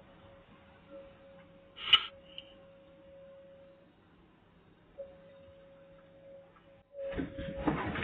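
Security-camera audio with a steady electrical hum and a brief high beep about two seconds in. From about seven seconds in comes a run of knocks and scraping as the white car's body rubs against the parked car.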